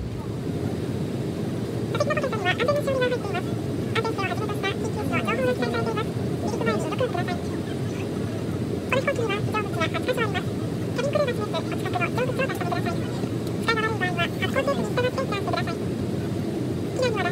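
Steady rumble of an Airbus A320's cabin, with a voice speaking over it in phrases from about two seconds in.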